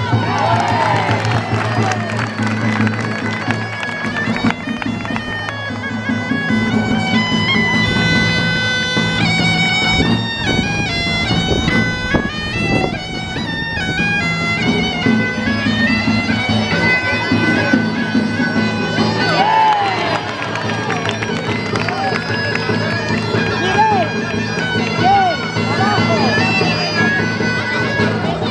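Gaita de fole (Zamoran bagpipe) playing a quick dance tune over its steady drone, with a tamboril drum beating along.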